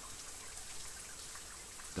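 Steady patter and trickle of water falling from a rock overhang and splashing on the ground below.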